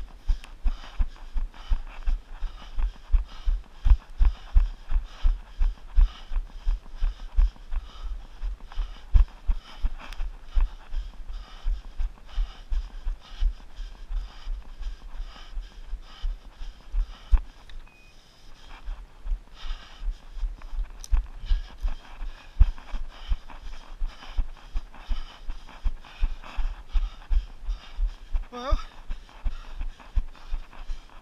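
Running footfalls on grass, heard as a steady thud about three times a second through a body-worn camera. The steps fade out briefly about eighteen seconds in, then pick up again. Near the end there is a short "oh".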